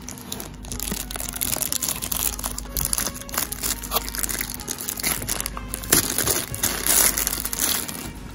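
Clear plastic bag crinkling and rustling as a remote control is pulled out of it: irregular crackles throughout, loudest about six and seven seconds in.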